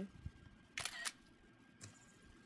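Mac Photo Booth's built-in camera-shutter sound: one short shutter click just under a second in, as a picture is taken at once with no countdown beeps.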